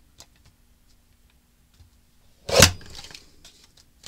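A paper trimmer's blade arm comes down once through a stack of patterned cardstock with a sharp crack about two and a half seconds in, followed by a short rustle of paper.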